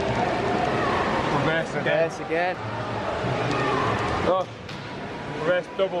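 Indistinct voices echoing in an indoor swimming-pool hall, heard in short snatches over the hall's steady background noise.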